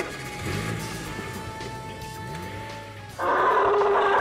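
Background music. About three seconds in, a loud, harsh elephant trumpet sound effect begins suddenly and is held for about two seconds.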